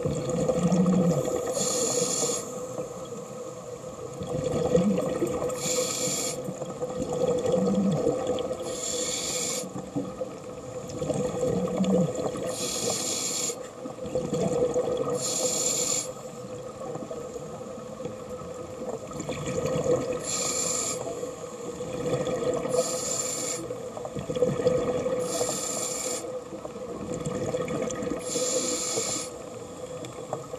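Scuba regulator breathing underwater, picked up through the camera housing: a burst of hiss about every three seconds, over a steady hum.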